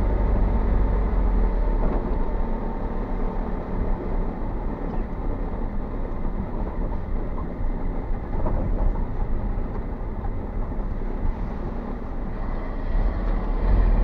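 Engine and road noise heard from inside a moving vehicle's cab: a steady low rumble with a constant hiss of tyres on wet road.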